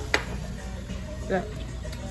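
A single sharp click near the very start, the loudest thing in the moment, over a steady low room rumble.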